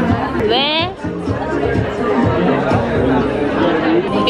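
A pop song with a singing voice playing over a restaurant's sound system, mixed with diners' chatter. About half a second in there is a brief high, rising voice sound.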